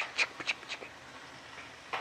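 Quiet kitchen room noise with three short clicks or knocks in the first second.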